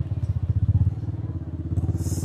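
Motorcycle engine idling close by, a steady, rapid low pulse.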